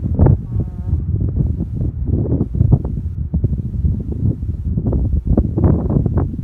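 Strong wind buffeting the microphone: a gusty low rumble with constant knocks and pops. Near the start, a short pitched sound rises above it for about half a second.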